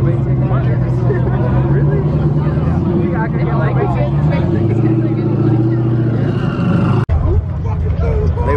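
A car engine running steadily at low revs amid crowd chatter, its pitch dipping lower for a moment in the middle before settling back. The sound cuts out abruptly for an instant near the end.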